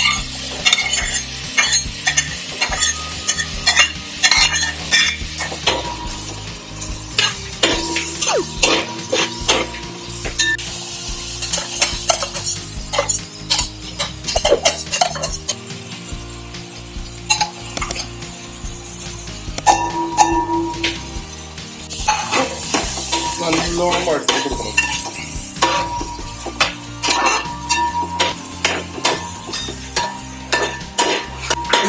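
Sliced shallots, green chillies and curry leaves sizzling in hot oil in a metal pan, stirred with a steel spatula that scrapes and clinks against the pan over and over. The sizzle swells twice, around the middle and again later on.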